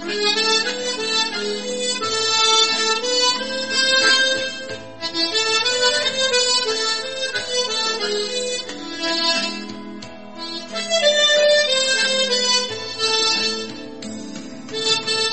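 Harmonica playing a slow melody with held bass notes sounded together underneath it, in the simultaneous-bass technique.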